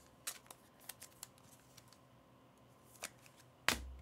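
Baseball cards being handled and slid into rigid plastic toploaders: a scatter of light plastic clicks and card-on-plastic slides, several in the first second or so and the sharpest one near the end.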